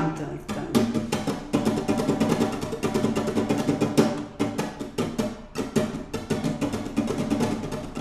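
Nylon-string flamenco guitar strummed in a continuous abanico (flamenco triplet): a down-stroke followed by wrist turns, repeated as a fast, even run of strokes on one chord.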